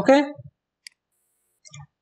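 A spoken "okay" at the start, then a single short, sharp click a little under a second in.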